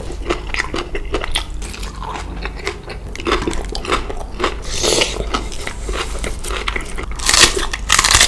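Close-miked crunchy biting and chewing of raw vegetables and spicy papaya salad, a run of sharp crunches, with the loudest crunching near the end as a raw cabbage leaf is bitten.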